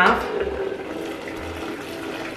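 Hot water poured from a glass electric kettle into a saucepan: a steady stream splashing into the pot.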